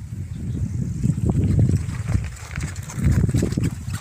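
Wind buffeting a phone microphone outdoors: a low, uneven rumble that swells and fades, with a few faint clicks.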